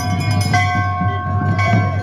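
Large brass temple bells hung at a gate being rung by hand. A fresh strike comes about half a second in and another shortly before the end, and their ringing tones overlap and hang on.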